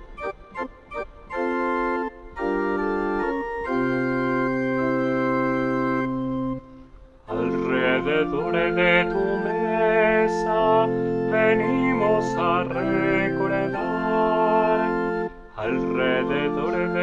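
Yamaha digital piano playing the introduction to a hymn in sustained, organ-like chords that hold without fading. A slower opening phrase breaks off about seven seconds in, and a fuller passage follows with a wavering melody on top.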